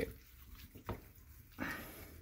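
Gloved hands rubbing seasoning into the raw, moist skin of a spatchcocked Cornish hen: a faint click a little under a second in, then a brief soft wet squish.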